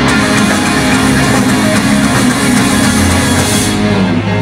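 Live rock band playing loud: a Les Paul-style electric guitar over drums and bass.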